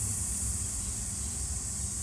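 Steady high-pitched chorus of insects, with a low rumble underneath.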